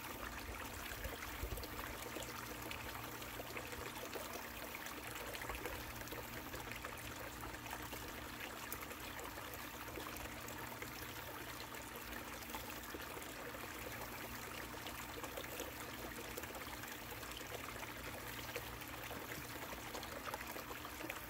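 Water running steadily down an Angus Mackirk Mini Long Tom sluice, an even trickling wash with a faint steady hum underneath.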